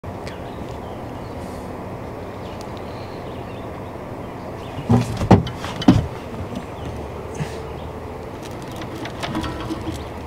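Small Mercury outboard motor running steadily at low trolling speed, with water noise. A few loud knocks and thumps about five and six seconds in as a fisherman moves across the boat to a rod.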